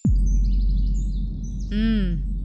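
Dramatic film sound effect: a sudden bass drop that falls steeply in pitch into a loud, sustained deep drone, with birds chirping faintly above it.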